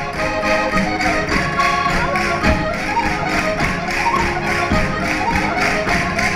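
Live Portuguese chula folk music: several melody instruments playing with sliding notes over a steady percussive beat.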